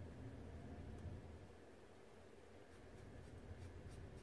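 Near silence: room tone with a low steady hum and the faint sounds of a watercolor brush, with a few light ticks near the end as the brush is worked in the paint pans of a watercolor palette.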